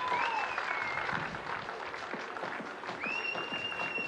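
Scattered hand clapping, with a short whistle at the start and a long, steady whistle blown from about three seconds in.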